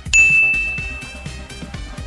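A single bright ding, a bell-like chime struck once just after the start that rings on as one high tone and fades away over about a second and a half.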